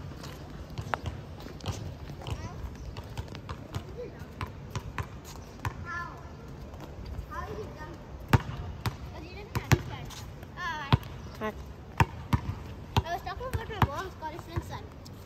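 Basketballs bouncing on an outdoor hard court: sharp, irregular thuds that come more often and louder in the second half, with children's voices calling now and then.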